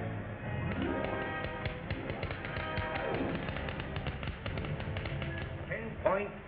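Film-score music with a rapid, even tapping running through it, about five or six taps a second, from about a second in until just before the end.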